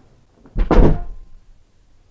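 A single loud thud about half a second in, lasting under half a second.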